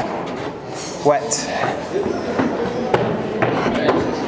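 A man says one word, then faint voices of other people carry through a stone passage, with a few sharp taps.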